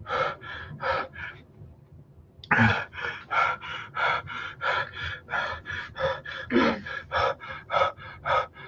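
A man panting hard through an open mouth. A few breaths, a short pause about two seconds in, then quick, even breaths about three a second. He is breathing against the burn of an extremely hot chili sauce.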